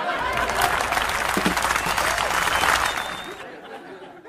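Audience applause with crowd voices mixed in, a dense patter of clapping that fades away over the last second or so.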